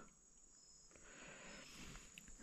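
Near silence, with crickets or other night insects giving a faint, steady high-pitched chirring in the background.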